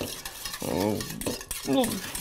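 Sauce being stirred with a metal utensil in a small stainless steel bowl, the utensil scraping and clinking against the bowl. A voice murmurs briefly twice.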